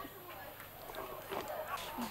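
Indistinct outdoor chatter, several voices talking at once and overlapping, with a few short knocks.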